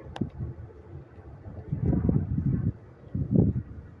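Wind buffeting the microphone in gusts, one about two seconds in and another shorter one near the end, with a single sharp click just after the start.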